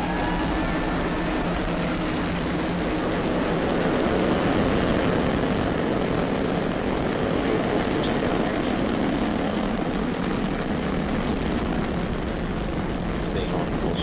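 Falcon 9 first stage's nine Merlin engines at liftoff: a loud, steady rush of rocket exhaust noise, heavy in the low end, continuing without a break as the rocket climbs away.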